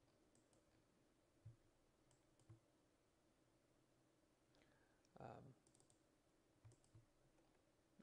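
Near silence with a few faint, separate computer mouse clicks as points are picked in the modelling software.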